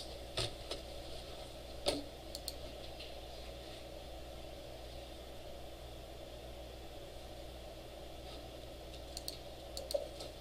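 Steady hum of a quiet room, broken by a few isolated computer keyboard clicks: one about half a second in, a sharper one near two seconds in, and a quick few just before the end.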